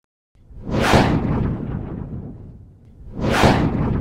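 Two whoosh sound effects, each swelling quickly and trailing off slowly, the second about two and a half seconds after the first.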